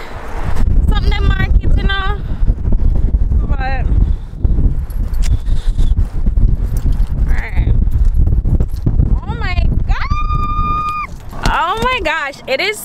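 Wind buffeting the microphone, a loud low rumble, with a few short high voice calls. Near the end a high voice holds one steady note for about a second.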